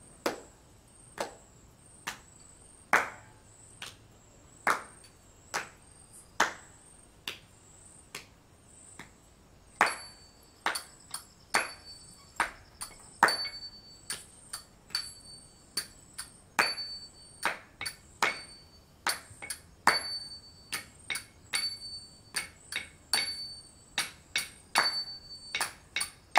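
Small hand cymbals struck in a rhythm to keep time for dance, each stroke ringing briefly. The strokes come about one a second at first, then grow quicker and denser about ten seconds in.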